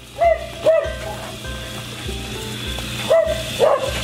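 Background music with a steady beat, over which an animal gives two pairs of short calls, one pair just after the start and another about three seconds in.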